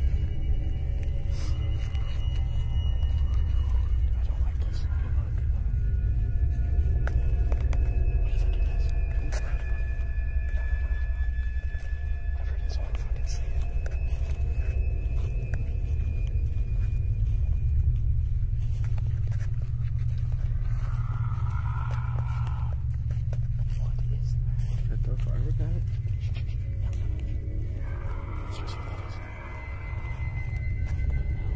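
A steady low rumble under eerie, droning background music, with faint indistinct voices; a muffled, smeared sound rises and fades about two-thirds of the way in and again near the end.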